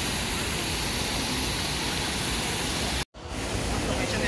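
Steady, even rushing noise with no clear pitch or rhythm. It drops out abruptly for a moment about three seconds in, at an edit, then returns.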